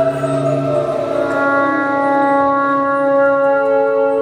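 Live ambient space-rock music: sustained drone-like tones with one tone gliding down in pitch over the first two seconds, settling into a steady held chord of several tones.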